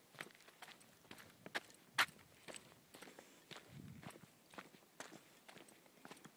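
Footsteps on a stony mountain path: faint, irregular steps about two a second, with one sharper click about two seconds in.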